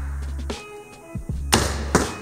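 Background music playing with steady tones, under a low rumble that comes and goes. Two sharp knocks come near the end, about half a second apart.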